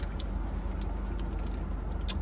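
Steady low hum of a car engine idling, heard from inside the cabin, with a few faint clicks over it.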